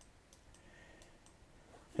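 A few faint, separate clicks of a computer mouse over quiet room tone.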